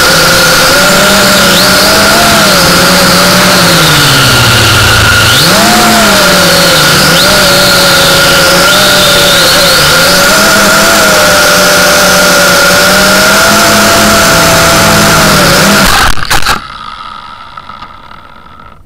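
Electric motors of a small RC aircraft whining loudly close to its onboard camera, the pitch wavering up and down with the throttle over a rush of wind noise. About sixteen seconds in it crashes into the ground with a few sharp knocks, and the motors cut out.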